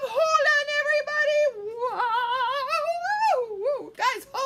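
A woman's voice making a high, wordless sung sound, held with a wavering pitch for about three and a half seconds, rising near the end and then falling away. It is a pretend flying noise for a make-believe take-off.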